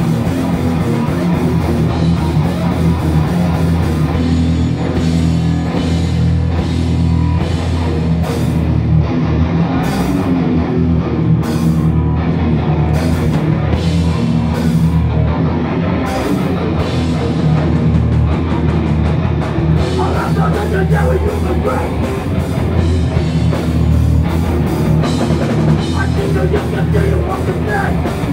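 Hardcore band playing live: heavily distorted electric guitars and bass over a pounding drum kit, loud and dense.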